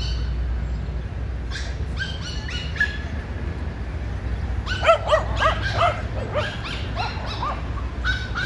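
Small dogs barking: a few short, high barks about two seconds in, then a quick run of louder barks from about five seconds in, the loudest near the start of that run.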